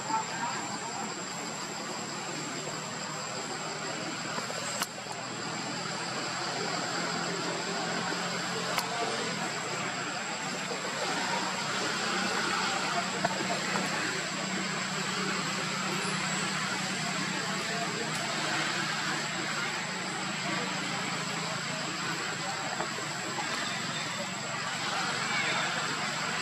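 Steady outdoor background noise with indistinct voices, and a thin, steady high-pitched tone throughout.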